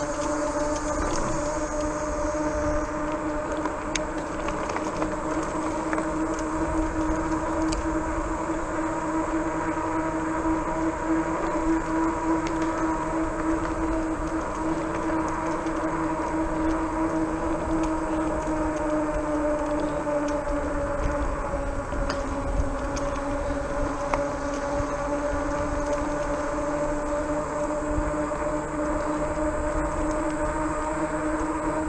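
A RadRover fat-tire e-bike cruising on a paved trail gives a steady droning hum from its tires and hub motor. The pitch sags a little past the middle and then holds, over a low wind rumble.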